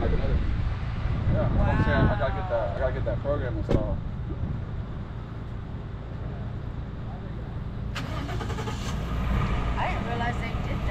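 A vehicle engine idling with a steady low rumble, with a couple of sharp metallic clicks, one a few seconds in and one near the end, and brief voices.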